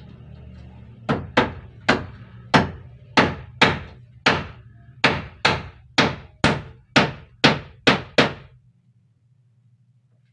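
Hammer driving nails into a wooden wall panel and its frame: about fifteen sharp blows at roughly two a second, starting about a second in and stopping a little before the end.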